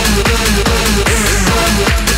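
Hard house dance music from a DJ mix: a fast, steady kick drum beat under short, repeating synth notes.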